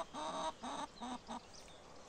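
Faint clucking of a chicken: four short calls in quick succession in the first second and a half.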